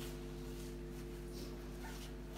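A steady low hum of several held tones, with faint shuffling and footsteps of people moving about the room.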